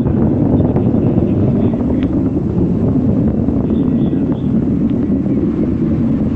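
Distant rumble of a United Launch Alliance Atlas V 541 rocket in ascent, its RD-180 main engine and four solid rocket boosters heard as a steady low rumble from miles away, with wind on the microphone.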